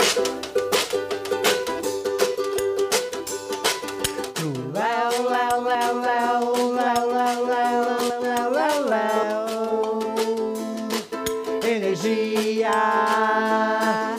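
Ukulele strummed in a steady rhythm, with a washboard scraped and tapped as percussion. From about five seconds in, a voice holds long sung notes over the strumming, sliding between pitches.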